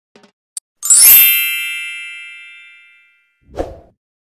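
Bright bell-like chime sound effect struck once about a second in, ringing with several high tones and fading away over about two seconds. A short, dull thump follows near the end.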